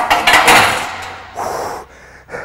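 A loaded barbell set down onto a steel rack: a sharp metal clank, then about a second of rattling noise, and a shorter burst of noise about a second and a half in.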